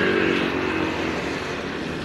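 A motorized tricycle's motorcycle engine passing close by, loudest at first and then fading as it moves away.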